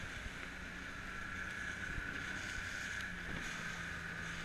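Outboard motor of an inflatable coach boat running steadily under way, mixed with wind and water noise.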